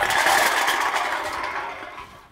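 Empty aluminum drink cans clattering and rattling on asphalt as a bagful is dumped out, a dense rattle that fades away over the two seconds.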